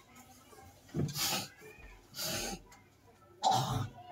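A person coughing: three short, harsh coughs about a second apart, the last the loudest.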